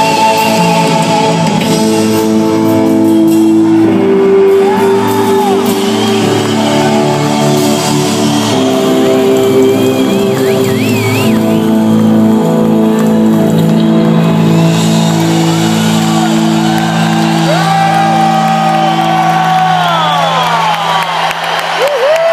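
A rock band playing live at full volume: long held electric guitar and bass chords that change every couple of seconds, with the singer's shouts and whoops over them. This is the song's closing stretch, and the band drops out near the end.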